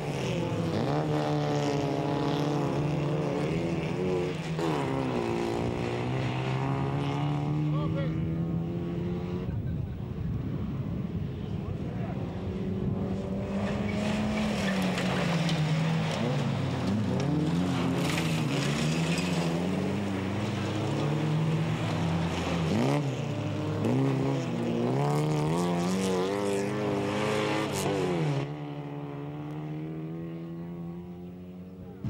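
Folkrace cars' engines racing on a dirt track, their pitch rising and falling over and over as they accelerate, lift off and shift through the corners. Several engines overlap, and the sound drops in level near the end.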